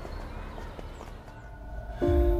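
Low outdoor background noise with a few faint, light footsteps. A faint held note comes in near the end.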